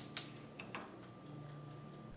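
Faint kitchen sounds from a frying pan of asparagus on a stove: a few sharp, light clicks over a low steady hiss.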